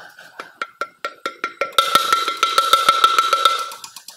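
Rapid metallic clicking over a steady ringing tone as a part in the centre bore of a loader gearbox housing is turned by hand. The clicking grows much louder about two seconds in and fades near the end.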